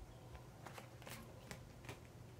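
Faint rustling and several soft flicks of a paperback picture book's pages and cover as it is handled and turned.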